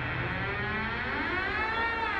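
Siren-like wailing tone in a horror soundtrack, with several pitched layers. Its pitch rises slowly from about half a second in and peaks near the end, over a low dark drone.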